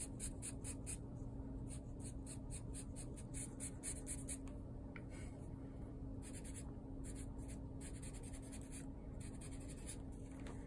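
Black Sharpie marker drawing on brown paper: quick, short scratchy strokes in bursts, with a brief pause about halfway through. A steady faint low hum runs underneath.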